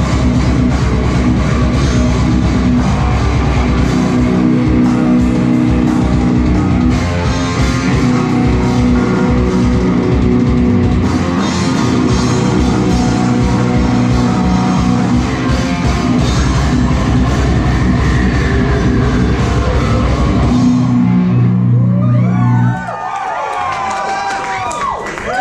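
Live heavy metal band playing loud distorted electric guitars, bass and drum kit. The band stops abruptly about three seconds before the end, leaving wavering high tones that glide up and down.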